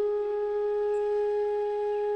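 A flute holding one long steady note at the start of a song.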